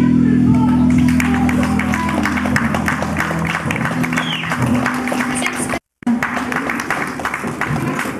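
Live rock band's last chord ringing out and fading, while audience applause builds up in the hall. The sound cuts out completely for a moment about six seconds in.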